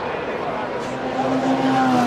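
Formula One cars' 2.4-litre V8 engines running at reduced pace behind the safety car: a steady engine note that sags slightly in pitch in the second half.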